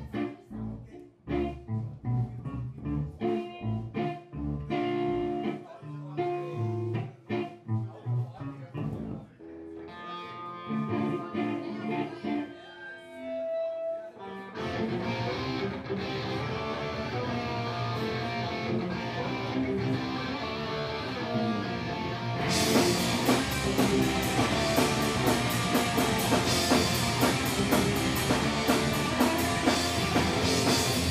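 Live punk rock band starting a song. An electric guitar opens alone, picking out separate notes. The rest of the band comes in about halfway through, and drums with cymbals join at about three quarters, so the song is at full volume by the end.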